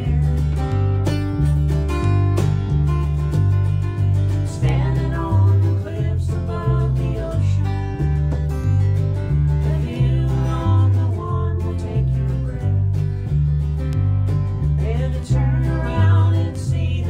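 Live acoustic country song in the key of C: acoustic guitar and a second plucked stringed instrument, over a steady alternating bass line, with sung phrases coming in now and then.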